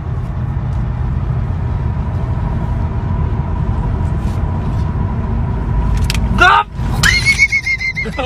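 Steady low rumble of a car running, loud throughout. Near the end a voice rises, then a high, shrill held cry comes in.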